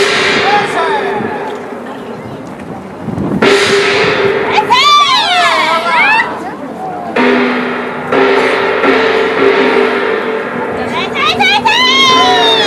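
A large gong struck with a padded mallet four times: at the start, about three and a half seconds in, and twice in quick succession around seven to eight seconds. Each stroke rings on for seconds with a wavering, shimmering tone.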